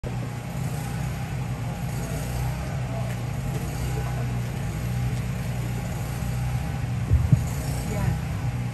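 A steady low hum of background noise, then two quick thumps about seven seconds in, as a microphone on its stand is handled and adjusted.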